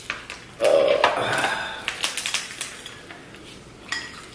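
Snow crab shells being cracked and picked apart by hand, a dense crackling stretch about a second in followed by scattered sharp clicks.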